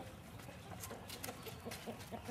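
Domestic hens clucking, with a run of short clucks from about halfway through, mixed with a few sharp ticks.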